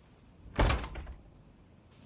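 A house's front door shutting: one sharp knock about half a second in, followed by a few fainter knocks.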